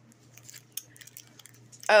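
Faint crinkles and small ticks of a clear plastic bag being handled in the fingers.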